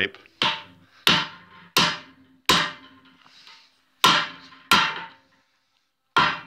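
Homemade steel hammer with wooden face inserts striking the anvil of a steel bench vise. There are four blows about two-thirds of a second apart, a pause, then two more, each a sharp knock with a short ring.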